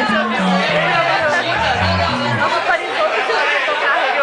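Crowd chatter filling a bar, with a bass playing a short run of separate low notes that step up and down in the first two and a half seconds, not yet a song.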